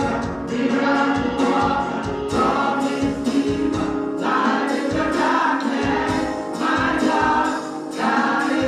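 A group of women singing gospel together into microphones, with several voices blending through amplification over steady musical accompaniment.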